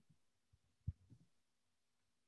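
Near silence: room tone with a faint steady hum and one soft, low thump just before the middle, followed by a couple of fainter ones.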